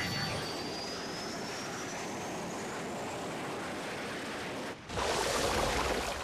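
Cartoon jet aircraft sound effect: a steady rush of jet noise with a thin whine slowly rising in pitch, broken off after about four and a half seconds by a second, louder rush of jet noise as the jet passes.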